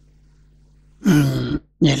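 A man's short wordless vocal sound, a loud voiced 'haa'-like utterance falling in pitch, about a second in, then his speech starting near the end. A faint steady low hum lies underneath.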